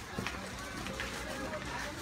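Indistinct background voices and music over a busy market hubbub, with scattered small clicks and knocks.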